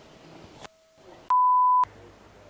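A short electronic beep: one steady mid-pitched tone about half a second long, edited into the soundtrack about one and a half seconds in, with the sound dropping out to dead silence just before it.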